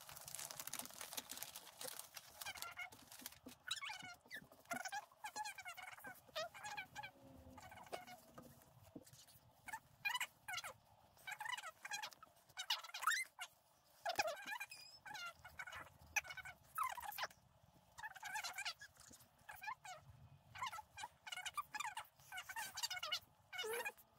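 Fast-forwarded soundtrack: voices sped up into quiet, high-pitched, chattering gabble that comes in short bursts with small gaps.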